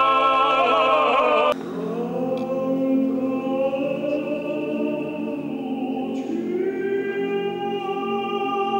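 Georgian male choir singing a cappella in long held chords. About a second and a half in, the sound breaks off abruptly into a quieter held passage, and near the end further voices come in.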